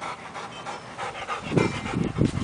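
A dog panting after hard play, with a few low thuds near the end.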